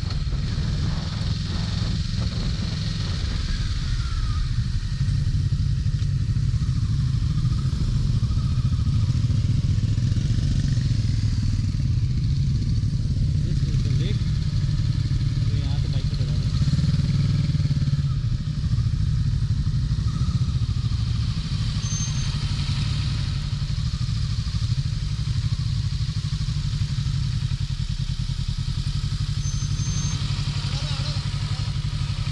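Motorcycle engine running steadily at low speed on a dirt track, a constant low drone with wind and road noise on the bike-mounted microphone.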